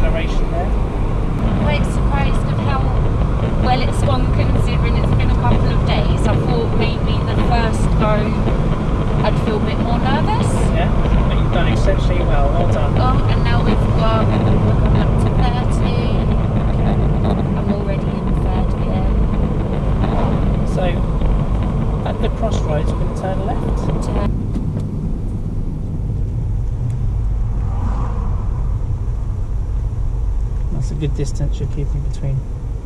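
Steady tyre and engine rumble of a car being driven, heard inside the cabin. About 24 seconds in, the higher part of the noise drops away abruptly.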